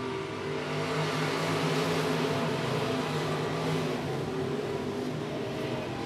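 A pack of IMCA stock cars racing on a dirt oval, their V8 engines running at speed together. The sound swells a little about a second in as the field passes close by, then eases.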